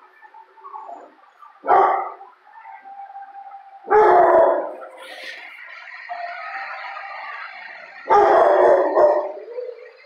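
A dog barks loudly three times, about two seconds in, at four seconds and again near the end, with a long, drawn-out held cry between the last two barks.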